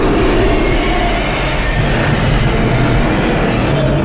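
Film sound effect of a huge explosion, a loud, steady rumble that runs on without a break.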